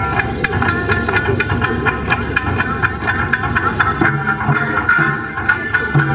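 Festival taiko drums beaten in a steady, driving rhythm, with a sustained high melody line over them, as Japanese festival music for a kōodori dance.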